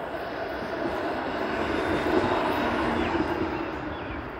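A low-floor Flexity Outlook streetcar passing close by: a steady electric drone with rolling noise that grows louder toward the middle and eases off near the end as it moves away.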